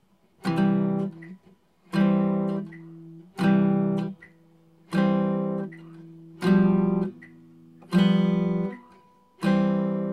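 Archtop hollow-body electric guitar playing a chord about every second and a half, seven in all, each struck and left to ring and fade, with faint metronome ticks between them.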